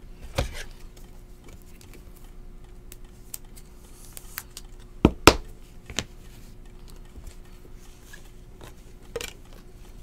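Trading cards being handled and set down on a table: a few light taps and clicks, the loudest pair about five seconds in, over a faint steady hum.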